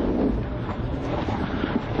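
Rally car running flat out, heard from inside the cabin: a dense, steady rush of engine, tyre and wind noise with no clear engine note.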